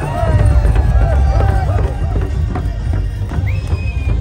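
Barrel drums beating a steady dance rhythm while a crowd of voices sings and calls over it, with a rising whoop near the end.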